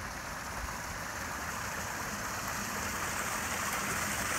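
Rainwater runoff running along a concrete street gutter toward a storm drain grate, with rain falling: a steady watery hiss that grows gradually louder toward the end.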